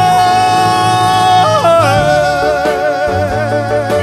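Live ballad performance with band: a singer holds one long high note for about a second and a half, then moves to a lower note sung with wide vibrato over the band's sustained backing.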